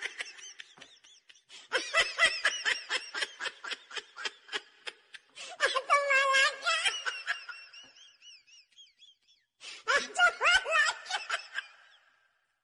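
High-pitched laughter in quick pulsing bursts, coming in three bouts: about two seconds in, around six seconds, and near ten seconds. The middle bout is drawn out into one long held note. The abrupt starts and stops from silence are typical of a laughter clip laid over the video.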